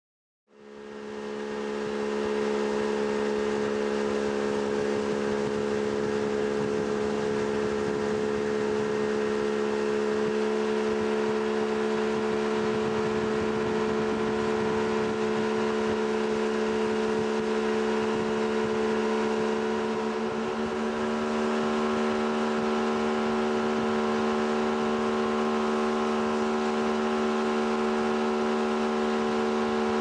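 Motorboat engine running at a steady pitch under load while towing a water skier, heard from aboard the boat. It fades in over the first second or two.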